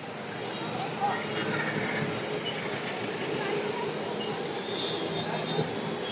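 Busy street ambience: a steady wash of crowd chatter and passing traffic, with faint short high tones near the end.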